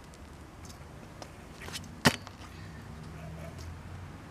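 Stunt scooter rolling on a concrete driveway, its wheels giving a low rumble that grows louder in the second half. One sharp clack comes about two seconds in, typical of the scooter landing on the concrete during a trick.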